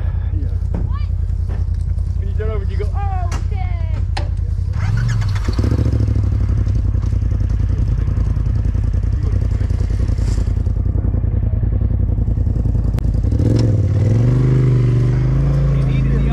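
A rock buggy's engine running under load as it crawls up a rocky ledge, revving up about five seconds in and again near the end.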